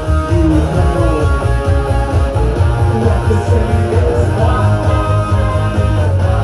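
Live rock band playing an instrumental passage: electric guitar over bass and a driving drum beat, with no vocals.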